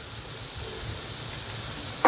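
Steady sizzling hiss of a jaggery churma mixture cooking in a nonstick pan on the stove.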